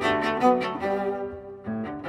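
Cello played with the bow, a quick run of notes with piano accompaniment. The line thins out about a second and a half in, then fresh notes come in.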